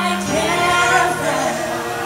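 Two women singing live into microphones with musical accompaniment, holding long notes.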